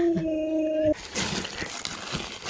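Siberian husky howling: one long, steady note that breaks off about a second in.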